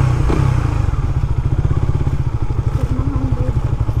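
Motorcycle engine running at low revs as the bike rolls slowly, a steady rapid putter of even exhaust pulses.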